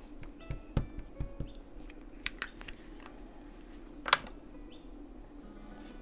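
Light knocks and clicks of a clear acrylic stamp block being handled and pressed onto paper on a desk while stamping a small number stamp, with a sharper click about four seconds in. Soft background music plays underneath.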